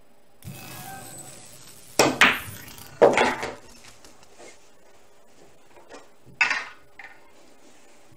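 A pool shot is played: the cue strikes the cue ball, which rolls across the cloth. It cuts the object ball toward the corner pocket, with sharp clacks of ball on ball and of balls striking cushion and pocket, loudest about two and three seconds in. One more hard knock comes a few seconds later.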